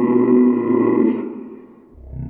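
A person's loud, drawn-out vocal cry, held steady and fading out about a second and a half in: a pained reaction to very hot water on the face.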